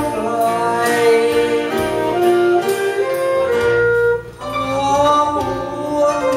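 Live performance of a Thai song: a man singing into a microphone while a saxophone plays along, over an accompaniment. A brief drop in the sound comes a little past four seconds in.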